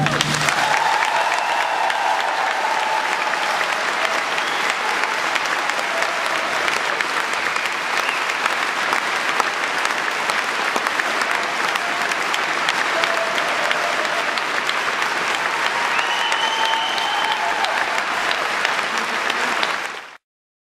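Concert audience applauding steadily, with a few voices calling out over the clapping, at the close of an orchestral piece. The sound cuts off abruptly at the very end.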